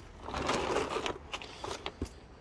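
Rustling, crunching handling noise, loudest in the first second, with a few light clicks, as a parked scooter is grabbed and shifted against cloth sacks.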